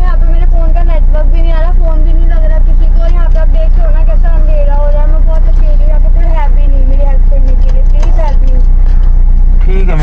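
Mostly speech: a fairly high-pitched voice talking almost without pause, over a steady low rumble from the car's idling engine.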